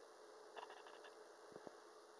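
Near silence: room tone with a faint steady hum and a few faint small clicks.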